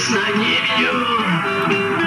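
A live rock band playing, with strummed guitar to the fore, in a passage between sung lines.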